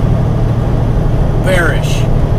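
Semi truck's diesel engine running, a steady low rumble heard from inside the cab.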